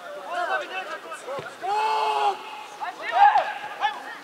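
Voices shouting and calling during a football match, with one long held shout about halfway through.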